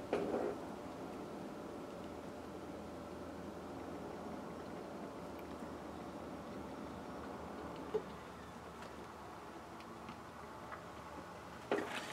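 Quiet, steady background hum of a small room, with a brief soft sound right at the start and a single short knock about eight seconds in.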